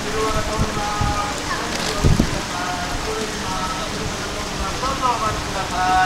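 Shallow water rushing along a concrete river channel and spilling over a low step, a steady splashing hiss, with people talking in the background and a single thump about two seconds in.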